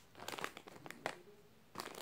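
Plastic packets crinkling as they are handled: a run of soft crackles in the first second, a quiet spell, then a few more near the end.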